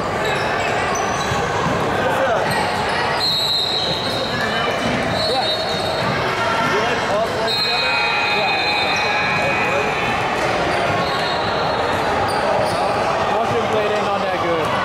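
Echoing sound of a basketball game in a large gym: a ball bouncing on the hardwood court and unclear voices of players and onlookers. High sneaker squeals come several times, the longest near the middle.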